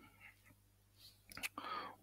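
Near silence with a faint low hum for the first second or so, then a quiet breathy voice sound, like an intake of breath or a whispered start to a word, in the last half second.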